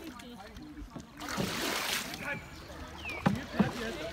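Canoe paddling: a brief rush of water from a paddle stroke about a second in, then two sharp knocks of a paddle against the canoe near the end, with faint voices.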